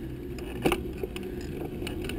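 Bicycle rolling along a paved road: a steady low rumble, with scattered sharp clicks and rattles. The loudest rattle comes a little past half a second in.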